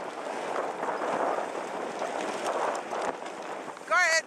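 Dog sled gliding over a packed-snow trail behind a running team: a steady scraping hiss from the runners on the snow, mixed with wind on the microphone.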